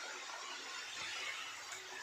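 Pieces of wheat-flour kara thukkada dough deep-frying in hot oil in a steel kadai, a steady sizzle.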